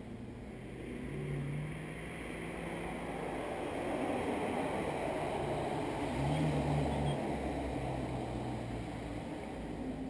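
A car drives past on the road: the tyre noise and low engine hum swell to a peak about six to seven seconds in, then ease off.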